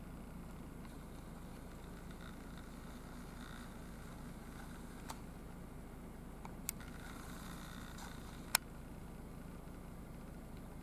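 Faint steady background noise with three sharp clicks from handling the camera, the loudest about eight and a half seconds in.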